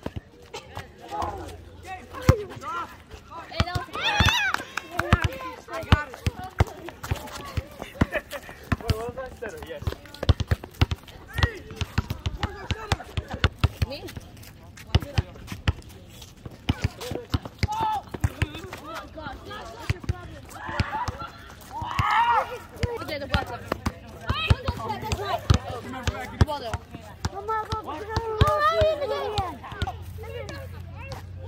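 Players' voices calling out during an outdoor volleyball game, with frequent sharp knocks and smacks, including the ball being struck. The voices are loudest about four seconds in and again near the end.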